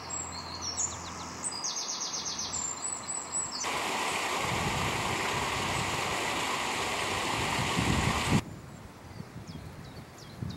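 Songbirds chirping and trilling, then, about four seconds in, a steady rush of water running through the lock gates for about five seconds, which cuts off suddenly and leaves quieter outdoor sound with faint bird calls.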